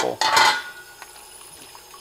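Kitchen tap running into a sink of soapy water, with a brief splash and clatter of a plastic part being handled near the start, then a steady low rush of the running water.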